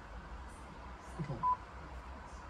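A Pioneer touch-screen car head unit gives one short, high beep about one and a half seconds in as its screen is pressed, over a low background hum.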